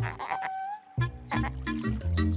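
Cartoon soundtrack music with bouncing low bass notes and crisp percussion ticks. The bass drops out briefly about half a second in, under a short held tone, then the rhythm picks up again.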